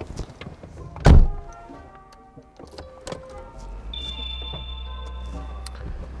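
Peugeot 106 Electric switched on with the key: a single loud clunk about a second in, the click that signals the car is ready to drive. About three and a half seconds in, its electric brake-servo vacuum compressor starts and runs with a steady low hum.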